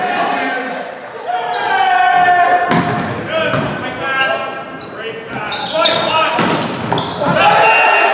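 Volleyball rally in a gym: a few sharp ball hits, the loudest about three seconds and six seconds in, ring through the hall amid players' shouts and calls.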